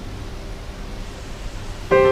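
Steady low hum and hiss of a train station platform's ambience. Just before the end, loud piano background music comes in with a sudden chord.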